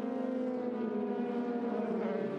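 Formula 3 race car engine running at high revs, heard as one steady note that sinks slightly in pitch.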